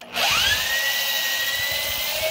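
Cordless drill spinning a spot weld cutter into a spot weld in a car body's sheet steel, cutting through the top layer of metal. The motor whine rises quickly as it spins up at the start, then holds steady.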